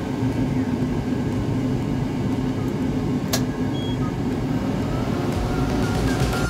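xTool P2 CO2 laser cutter running steadily as a cut job starts: a continuous low mechanical hum of its fans, with a single sharp click about three seconds in.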